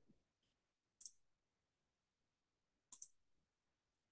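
Two faint computer mouse clicks about two seconds apart as a PowerPoint slideshow is started; otherwise near silence.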